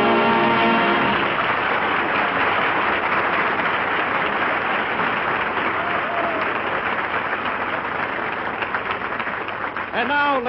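A studio audience applauding. An orchestra's held closing chord dies away about a second in, and the applause then slowly fades.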